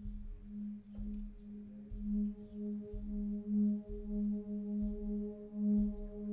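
Keyboard pad holding one low note with its overtones, swelling and fading in a slow steady pulse; higher overtones join about a second in. Faint low thuds come about once a second under it.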